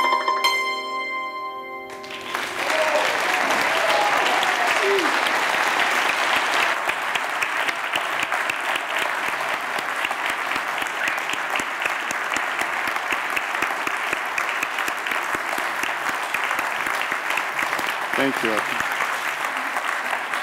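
The last notes of a solo musical performance ring out and die away, then an audience applauds steadily from about two seconds in.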